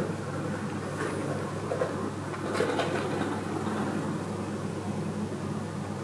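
A steady low hum, with a couple of faint brief rustles about one and two and a half seconds in.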